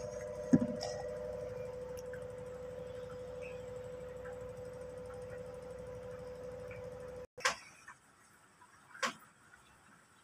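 A steady hum holding one tone, with a sharp knock about half a second in. The hum cuts off suddenly about seven seconds in, leaving a quieter background with two brief clicks.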